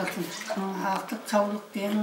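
A woman's voice in short spoken phrases, with brief pauses between them.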